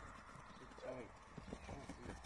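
Quiet, low talking with soft, scattered hoof steps of sheep and a dog moving over frozen grass.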